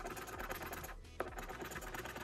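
Plastic scratcher disc rubbing rapidly back and forth over a paper scratch-off lottery ticket, scraping off the coating in quick dense strokes, with a brief pause about a second in.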